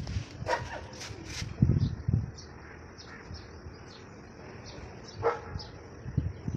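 A dog barking a few times: a quick run of barks in the first second and a half, and one more near the end. Two low thumps, the loudest sounds, come just before the two-second mark.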